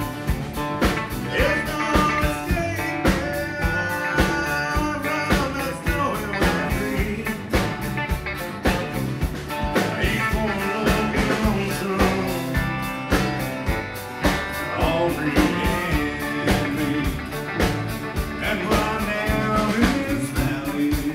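Live country band playing with a steady drum beat, acoustic and electric guitars, bass and a bowed fiddle carrying a melodic lead line between sung verses.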